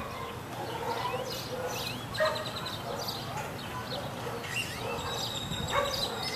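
Birds chirping: short rising whistles and quick trills of rapid high notes, about two seconds in and again near the end, over a low background rumble.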